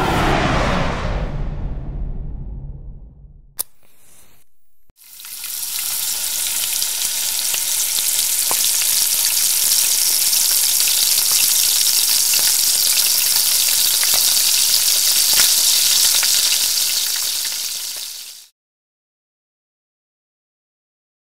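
Sizzling of food frying in a hot pan, a steady loud hiss full of small crackles that swells in about five seconds in and fades out near the end. Before it, the tail of a whooshing swoosh dies away over the first few seconds, followed by a short click.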